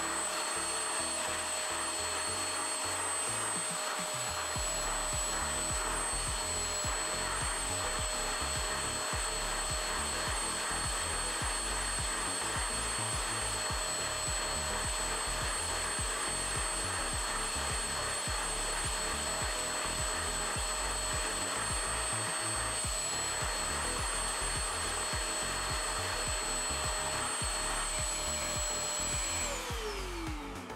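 Anko spot cleaner running, its motor giving a steady suction whine as the scrubbing nozzle is worked over the carpet. Just before the end the motor is switched off and winds down, its whine falling in pitch.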